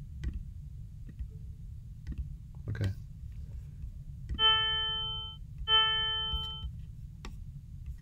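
Two notes, about a second each, from an additive synthesizer patch in Max/MSP: a 440 Hz sine-wave tone stacked with harmonic overtones. Each note starts sharply and fades, with some of the higher overtones dying out sooner than the rest.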